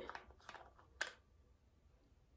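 Faint clicks of a small plastic spray bottle being handled, with one sharper click about a second in.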